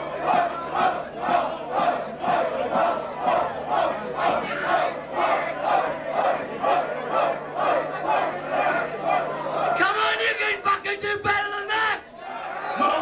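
Concert crowd chanting in unison, about two to three chants a second. About ten seconds in the chant breaks off and a single held, fluttering tone takes over.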